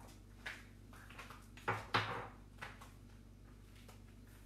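A few short knocks and thuds of things being handled in a kitchen, the loudest two close together just before the middle.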